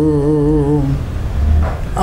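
An elderly man singing a long held, wavering note of a Telugu song, which ends about halfway through; a short pause follows before the singing resumes.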